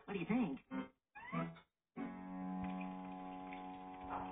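Cartoon soundtrack playing from a TV: a character's voice speaks with sliding pitch for under two seconds. After a brief silence about halfway in, a steady held musical chord follows.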